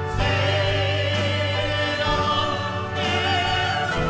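Church choir singing a worship song with a male soloist and orchestral accompaniment, in long held notes, the chord changing about three seconds in.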